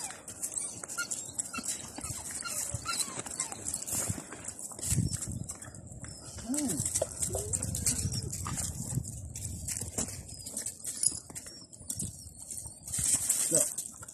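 Two dogs playing and scrabbling on loose gravel, their paws and a person's boots crunching and scuffing the stones, with a few short low sounds in the middle.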